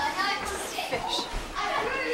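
Indistinct voices of other people talking in the background, some of them high-pitched.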